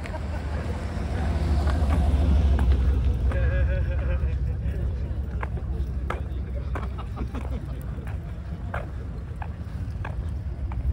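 Low engine rumble of a car driving slowly past, swelling about two to three seconds in and then fading away.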